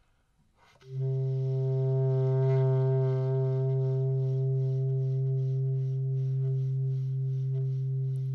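Bass clarinet coming in about a second in with one long, low note held steady as a drone.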